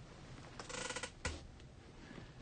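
Faint handling of a cardboard shipping box: a short scraping rustle about halfway through, then a single sharp knock.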